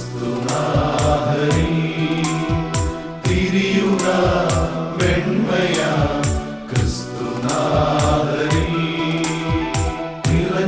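Male choir singing a Christmas song over orchestrated backing music with a steady drum beat.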